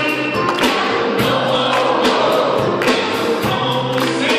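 Live performance of a Christmas song: an electronic keyboard with a steady beat about twice a second, and a small choir singing.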